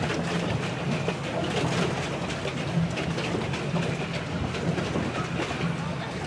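Swan pedal boat's paddle wheel churning the water, a steady rattling clatter over a low rumble.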